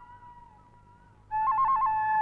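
Background film music: a solo flute-like melody that dies away at the start, then comes back about a second and a half in with a quick trill between two notes before settling on a held note.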